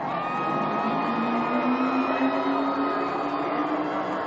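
NASCAR Cup Toyota's V8 race engine running at part throttle, its pitch climbing slowly and steadily for a few seconds as the car gathers speed.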